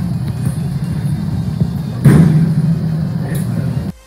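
A loud, muffled low rumble in a press room, recorded through a phone's microphone, which swells louder about two seconds in.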